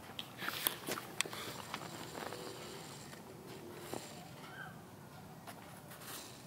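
Quiet stretch with a few light, sharp clicks and taps in the first two seconds, then faint steady hiss.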